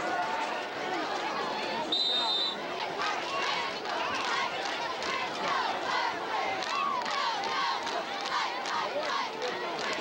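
Crowd of spectators and sideline players shouting and cheering. A referee's whistle blows once, briefly, about two seconds in, blowing the play dead after the tackle.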